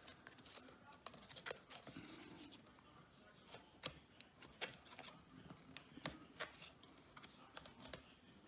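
Faint, irregular small clicks and taps of fingers working at small metal and plastic parts inside an opened laptop, a few sharper clicks standing out.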